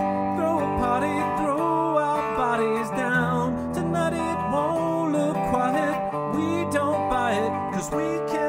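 Electric guitar played through a guitar amp in an instrumental passage of a song: a melodic line of bent, wavering notes over held lower notes.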